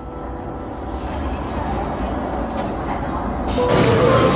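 Street background noise with traffic, a steady hiss that slowly grows louder.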